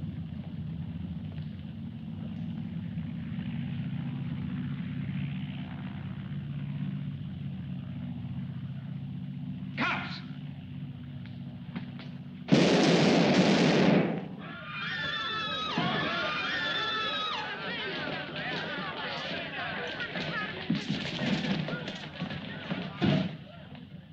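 Film soundtrack: a steady low background hum under music, then a single sharp gunshot about ten seconds in. About two seconds later comes a sudden, very loud burst lasting over a second, followed by wavering high music as the shot man collapses.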